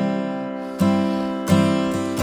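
Acoustic guitar strummed chords ringing out with no singing. Two fresh strokes land about a second in and again past the middle, each ringing and fading.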